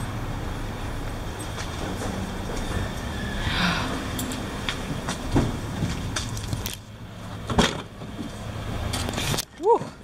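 Steady low hum of a parking garage with scattered clicks and knocks as someone gets into a car. The hum cuts out suddenly about two-thirds of the way through, and a single sharp knock follows, fitting a car door being shut.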